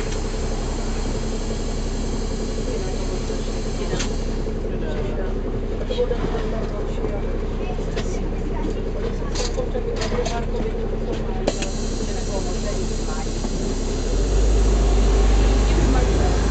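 Sor C 9.5 bus's diesel engine idling steadily at a stop, with voices and scattered clicks and rattles around the driver's cab. About two seconds before the end the engine gets louder and deeper as the bus pulls away.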